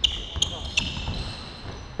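Basketball shoes squeaking on a hardwood court, a few short high squeaks in the first second, with a basketball bouncing.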